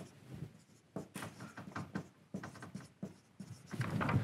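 Marker pen writing on a whiteboard: a quick run of short, faint, scratchy strokes as words are written out.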